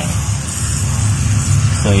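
Hand pump pressure sprayer misting water, a soft high hiss that swells about half a second in, over a steady low rumble.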